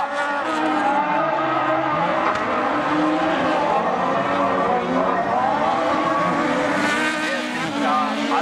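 Several autocross race cars' engines revving on a dirt track, their pitch repeatedly rising and falling as the drivers accelerate and shift through the corners.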